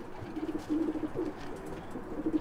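Racing pigeons cooing in their loft: a continuous run of short, low coos, one after another.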